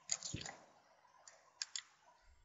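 Faint clicks from a computer keyboard and mouse: a short cluster at the start, then two quick clicks near the end.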